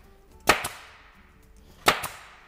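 Sharp cracks with a long echoing decay: a close double crack about half a second in and a single one near the end.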